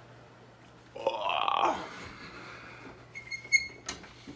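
A man's brief throaty vocal sound, just under a second long, about a second in. Near the end come a few quick high-pitched pips and a couple of sharp clicks.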